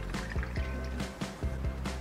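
Carbonated melon soda poured from a can into a plastic cup, under background music with a steady beat.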